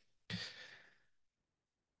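A single short breath from the speaker into the microphone about a quarter second in, fading away within about half a second.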